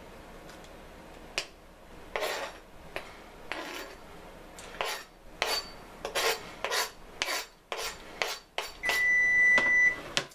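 A knife blade scraping chopped parsley off a plastic cutting board into a plastic tub of butter, in a run of short scrapes that come quicker in the second half. A steady, high electronic beep lasting about a second sounds near the end and is the loudest thing.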